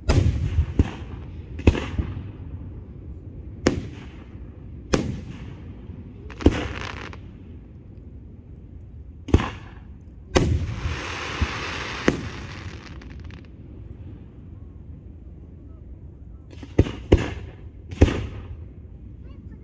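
Aerial firework shells bursting overhead: about a dozen sharp booms, each with a short echoing tail. One burst just past the middle is followed by a steady hiss lasting about three seconds, and after a quieter gap two bangs come close together near the end.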